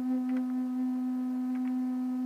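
A steady, unwavering hum-like tone with overtones, holding one pitch.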